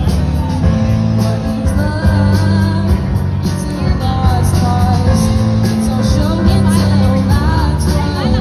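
Live rock band playing: a girl singing lead over electric guitar, bass guitar, drums and keyboard.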